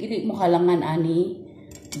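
A woman's voice, drawn out, for about the first second, then a short sharp click near the end from the knife and onions being handled on a cutting board.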